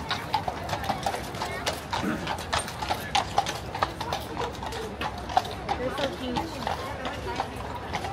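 Shod hooves of two police horses clip-clopping at a walk on hard paving, in an irregular run of sharp knocks.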